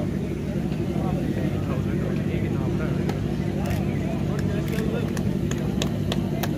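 Steady low hum from an unseen machine under the faint chatter of people. A few sharp claps or clicks stand out in the second half.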